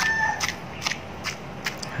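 Wooden pestle pounding raw shrimp and garlic in a mortar: a run of short dull knocks, about two to three a second.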